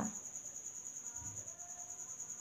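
Steady, high-pitched trill of a cricket, pulsing rapidly and evenly without a break.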